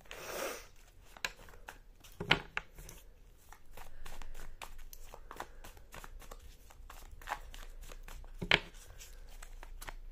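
A deck of tarot cards being shuffled by hand: a run of soft clicks and slides as the cards slip past each other, with a brief swish at the start and a few sharper snaps, the loudest about two seconds in and about eight and a half seconds in.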